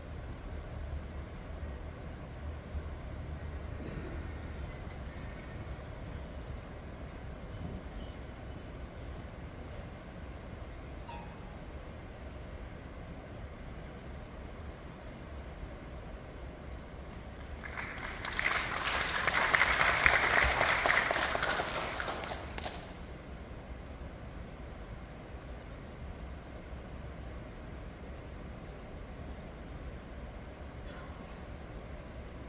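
Quiet concert-hall room tone with a low steady hum. Past the middle, a dense rustling, hissing sound swells for about five seconds and then dies away.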